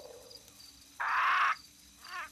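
A single rasping animal call about a second in, lasting half a second, against a faint forest background.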